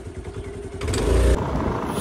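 A motor scooter running on the move, with wind rumbling on the microphone, starting a little under a second in. The loudest gust comes about a second in.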